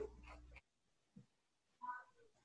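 Near silence: a low microphone hum cuts off suddenly about half a second in, and a brief, faint, high-pitched vocal sound comes just before the end.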